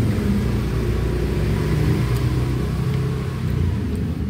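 A motor vehicle engine running with a steady low drone.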